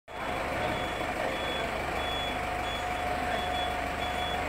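Bus engine idling with an electronic beeper sounding over it: a steady tone with short high beeps repeating about every two-thirds of a second.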